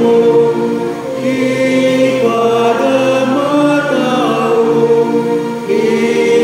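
Group of voices singing a hymn in Ilocano in harmony, holding long notes.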